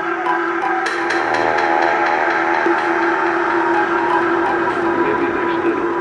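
House music from a DJ mix in a breakdown: sustained synth chords with a sweep that swells about a second in, and no kick drum.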